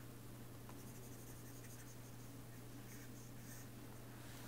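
Faint scratches and light taps of a stylus on a pen tablet, over a steady low electrical hum.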